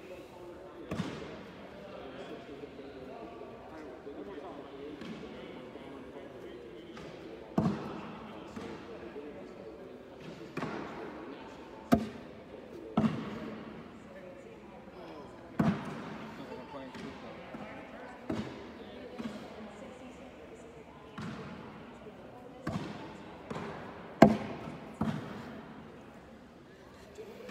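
Cornhole bags landing on wooden boards: about a dozen sharp thuds at irregular intervals, echoing in a large hall, over a faint background of chatter.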